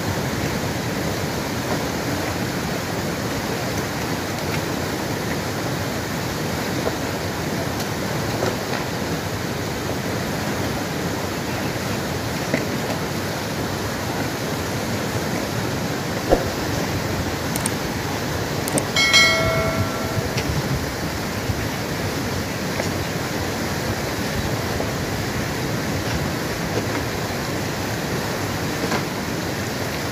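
Fast, turbulent mountain river rushing steadily over rocks. About two-thirds of the way in there is a single click, and soon after a brief high-pitched tone lasting about a second.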